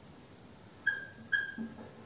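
Two short, high squeaks about half a second apart from a marker dragging on a whiteboard, each starting sharply and fading quickly.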